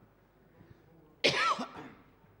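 A person coughs once, loudly, about a second and a quarter in, over faint room noise.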